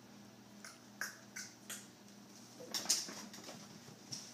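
House cat scampering after a thrown toy on a hardwood floor: a run of light, scattered taps, with a quick cluster of louder ones near the end of the third second.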